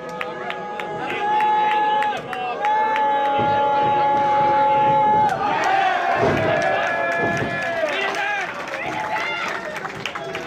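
Wrestling crowd: one voice holds a long, level shouted note, briefly and then again for about two and a half seconds, followed by a jumble of shouts and cheers, with sharp knocks scattered through.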